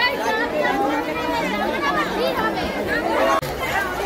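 Crowd chatter: many voices talking and calling out over one another, with a brief break a little before the end.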